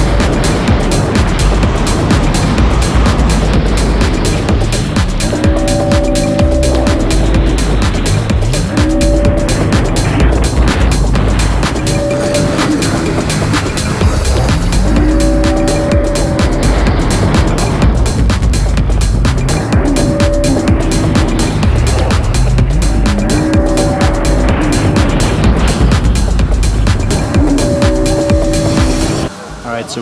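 Jet ski running at speed, heard from an onboard camera: engine, water spray and wind buffeting on the microphone, cutting off just before the end. Background music with short repeated chords about every three seconds plays over it.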